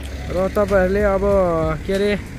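A voice singing long, smoothly gliding and held notes, over a steady low rumble.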